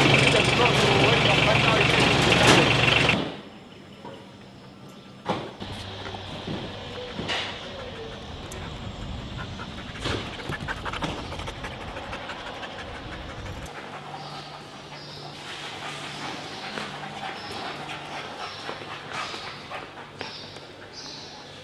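A vehicle engine runs loudly with dogs barking in its kennel crates, then cuts off sharply about three seconds in. After that come quieter surroundings with indistinct voices and scattered knocks.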